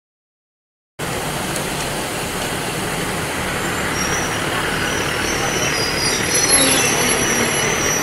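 A passenger train running through a station: a steady rumble of wheels on rail, with a high-pitched metallic wheel squeal building from about three seconds in. The sound starts abruptly about a second in.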